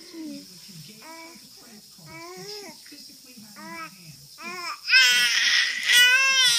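A baby girl babbling in a string of short, pitched coos, then about five seconds in breaking into a loud, high scream.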